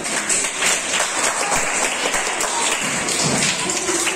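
A group of people clapping, a steady run of hand claps.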